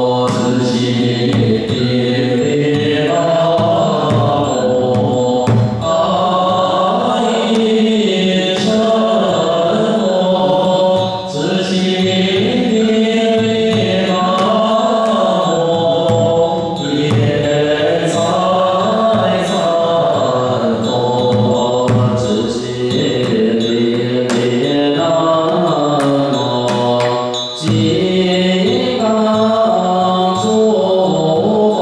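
An assembly chanting Buddhist liturgy in unison to a melodic line, with a Chinese Buddhist liturgical drum struck with two wooden sticks beating time throughout.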